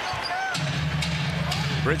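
Basketball arena sound during play: a basketball being dribbled on the hardwood court over crowd noise. Arena music with a steady low bass note comes in about half a second in.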